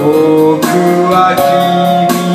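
A man singing into a karaoke microphone over a recorded backing track, holding long notes with slight slides in pitch.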